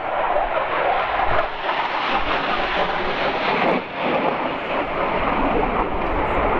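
Jet fighter flying overhead: a loud, steady jet roar with a brief dip about four seconds in.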